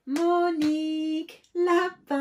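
A woman's voice calling out a name in a drawn-out sing-song chant, its notes held long, with short pauses between them.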